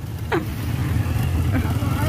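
Small motorcycle engines running at a steady cruising speed on a dirt road, heard as a steady low drone.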